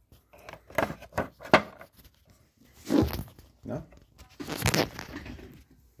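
Rustling, scraping handling noise close to the microphone, in a handful of short, uneven bursts. The sharpest comes about a second and a half in.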